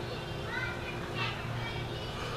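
Children's voices calling out in the background, high-pitched and brief, over a low steady hum.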